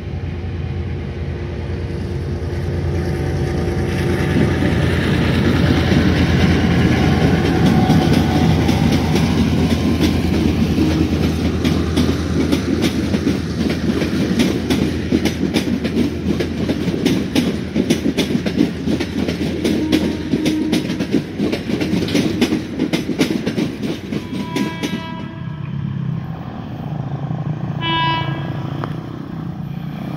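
A General Motors G-22 CU diesel locomotive running under load as it hauls passenger coaches past, its low engine note swelling, then the clickety-clack of the coaches' wheels over the rail joints. About 25 seconds in, a locomotive horn sounds two short blasts.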